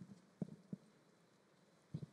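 Near silence broken by a few faint, soft knocks, about four in two seconds, irregularly spaced.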